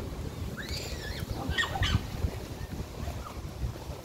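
Wind buffeting the phone's microphone in a low rumble, with a few brief high chirping calls about a second in.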